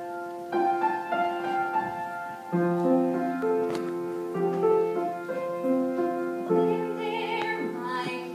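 Grand piano playing a slow introduction of held chords, a new chord struck about every two seconds.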